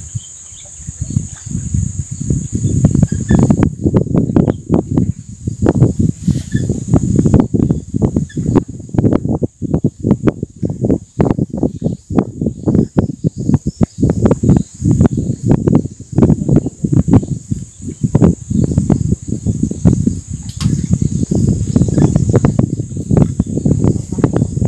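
Wind buffeting the microphone in loud, gusty, irregular rumbles, over a faint steady high-pitched drone.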